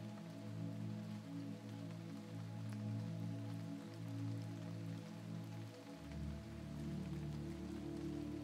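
Quiet ambient sleep music of soft held drone tones, the low notes shifting to a deeper chord about six seconds in, over a faint even hiss.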